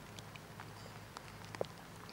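Quiet outdoor background with a steady low hum and a few faint, scattered ticks; one tick is a little louder about one and a half seconds in.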